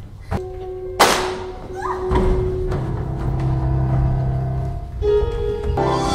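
Dramatic stage-musical underscore music: a sharp, loud crash about a second in, then held low notes with sustained chords above.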